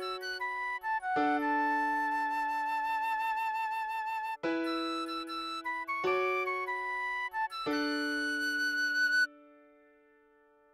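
A recorder plays a slow melody over sustained chords, holding one long note with vibrato a second or so in. The music breaks off shortly before the end.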